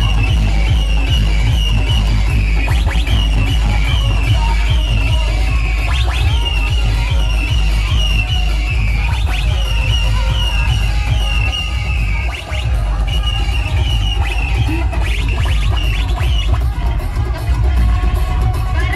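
Loud electronic dance music played through a street DJ sound system, with heavy pounding bass and a high, wavering melody line repeating over it. The bass and level dip briefly about twelve seconds in, then come back.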